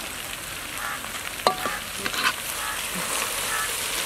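A metal ladle mixing raw chicken pieces coated in a thick wet marinade in a large metal pot, making a wet scraping, squelching sound. About one and a half seconds in, the ladle strikes the pot once with a short ringing clang.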